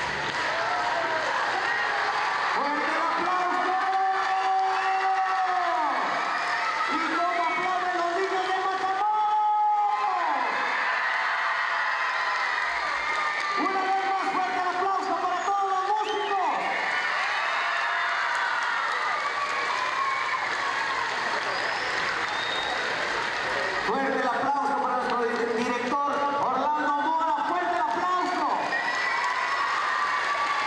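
Audience of children cheering and shouting over steady applause, many voices overlapping, some holding long shouts for a couple of seconds at a time.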